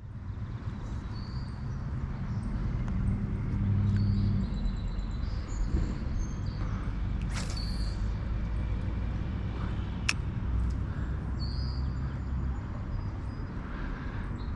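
Steady low engine drone, with a few short bird chirps over it and a sharp click about ten seconds in.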